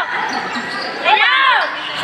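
Basketball shoes squeaking sharply on the court floor during play, in short rising-and-falling squeals about a second in, over the steady background noise of the game and the spectators.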